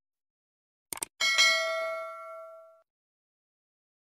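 A quick double mouse-click sound effect about a second in, then at once a bright notification-bell ding that rings out and fades over about a second and a half.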